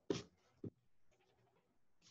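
Handling noise on a paper sketchbook: a short bump right at the start and a smaller knock about half a second later, then faint rustling of the page under a hand.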